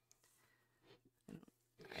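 Near silence: faint room tone with a couple of brief faint sounds, and a voice starting at the very end.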